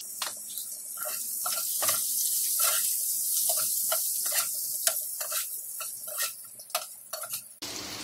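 Bottle-gourd kabab pieces sizzling in a little hot oil in a non-stick frying pan while a spatula stirs and turns them, scraping and tapping against the pan about twice a second. The stirring stops shortly before the end.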